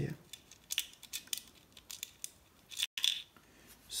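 Scattered light clicks and taps of metal nuts and bolts and hard 3D-printed plastic parts being handled as nuts are fitted by hand.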